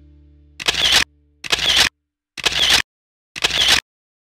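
Four camera shutter sound effects, about one a second, each a short bright snap of under half a second. The last held chord of the background music dies away during the first second or so.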